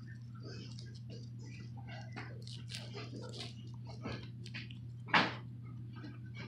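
Soft rustling and light scattered taps as a person shifts on the carpet and reaches in under furniture, over a steady low hum, with one louder sharp knock or bump about five seconds in.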